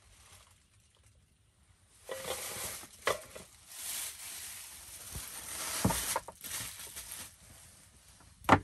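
Rustling of a cloth tote bag and plastic wrapping as things are taken out and handled, starting about two seconds in. A couple of sharp knocks come around three seconds in and again near six seconds.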